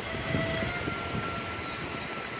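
Steady outdoor background noise, mostly low rumble, with a faint thin tone running through it.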